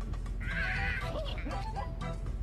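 A wavering high-pitched cry about half a second in, trailing off into lower sliding calls, over background music.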